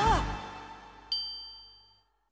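The theme music's last chord dies away, then about a second in a single bright, high ding rings out and fades: a cartoon twinkle sound effect.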